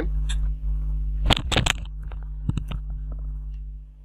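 Computer keyboard keystrokes, a handful of separate sharp taps with a quick cluster of three about a second and a half in, over a steady low hum.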